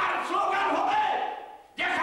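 A man's loud, raised voice preaching into a microphone with a drawn-out, held delivery. It fades to a short pause near the end, then starts again.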